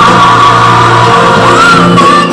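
Loud gospel music with a sung vocal line that holds long notes and swoops up and back down in pitch near the end.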